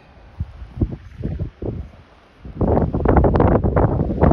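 Wind buffeting the camera microphone: a few short low gusts in the first two seconds, then loud, continuous wind noise from about two and a half seconds in.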